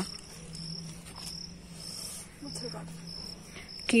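An insect chirping: a steady train of short, high-pitched chirps at even spacing, over a faint low hum.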